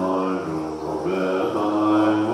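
Buddhist monks chanting prayers, male voices holding long notes with slow, slight shifts in pitch.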